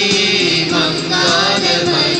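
A Tamil church hymn sung with instrumental accompaniment, the voice moving over steady held notes.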